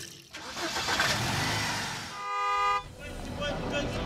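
Produced intro sound effects: a rush of noise swells and fades over about two seconds, then a short horn toot lasting about half a second. A voice-led jingle starts near the end.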